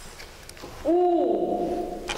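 A woman's voice holding one long, steady "oo" vowel at an even pitch, starting a little under a second in. It is the Marathi vowel उ (u), sounded out to be repeated.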